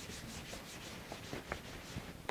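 Whiteboard eraser rubbed back and forth across a whiteboard, a faint, quick swishing of about six strokes a second.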